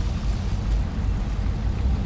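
Wind buffeting an outdoor microphone: a steady low rumble with no distinct events.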